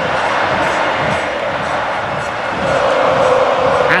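Football stadium crowd singing and chanting, a steady mass of voices that swells slightly near the end.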